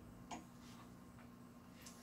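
Near silence with a few faint clicks, the clearest about a third of a second in: plastic clothes hangers knocking on a metal clothes rail as a garment is handled and hung up.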